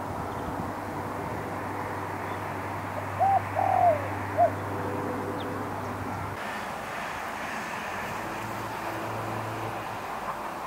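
A bird gives three short, arched calls in quick succession, about three to four and a half seconds in, over steady low outdoor background noise.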